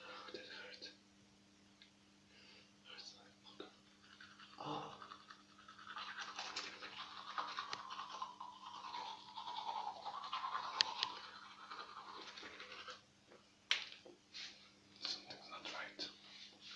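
Toothbrush scrubbing against teeth: a rapid, wet brushing that starts a few seconds in, runs for several seconds and stops, followed by a few sharp clicks near the end. A steady low hum runs underneath.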